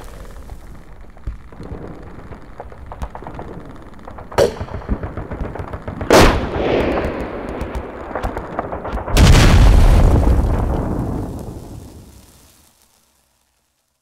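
Gunfire crackling in an attack, with a sharp blast about four seconds in, another about six seconds in, and a loud explosion about nine seconds in whose rumble dies away over about three seconds.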